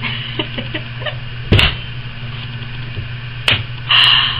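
A steady low electrical hum from the recording, with two short sharp noises, one about a second and a half in and one near the end.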